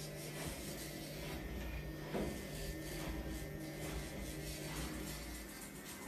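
Small electric pet nail grinder running steadily while filing a dog's claws.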